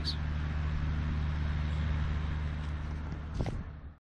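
A 1965 Chevrolet Corvair's air-cooled flat-six engine running steadily as a low drone, with a brief sound about three and a half seconds in. It fades out at the very end.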